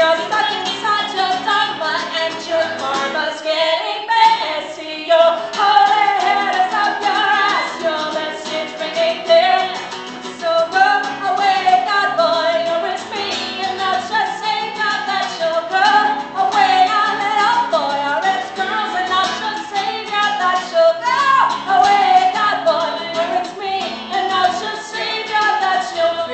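A woman singing lead while strumming an acoustic guitar, with a girl singing backup: a live folk song.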